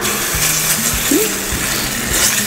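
Flour-thickened sauce sizzling in a hot frying pan as it is stirred with a spatula: a steady loud hiss that starts suddenly.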